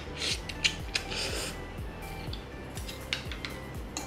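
A mouthful of instant curry noodles being slurped up in two breathy bursts in the first second and a half, with a few sharp clicks of cutlery on the plate, over background music with a steady beat.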